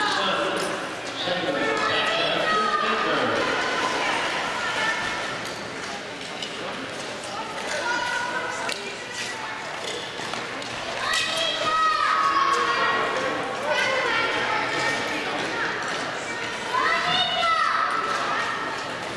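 Spectators' voices calling out and shouting in an echoing indoor ice arena, loudest about eleven seconds in and again near the end, with scattered knocks and thuds.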